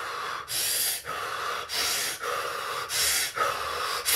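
A man breathing hard and fast through the mouth, quick breaths in and out following each other without a pause, about three full breaths. It imitates the rapid breathing that a cold shower sets off as the body tries to warm itself.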